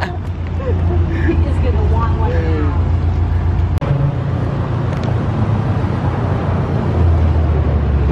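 Nissan GT-R R35 being driven, its twin-turbo V6 a steady low drone under road noise. The sound cuts out for a split second about four seconds in, and the low drone swells near the end.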